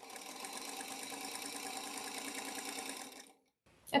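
Domestic sewing machine stitching a seam through quilting cotton for about three seconds at a steady speed, then stopping.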